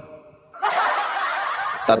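A person laughing under their breath for just over a second, starting about half a second in, heard through a band-limited voice-chat line.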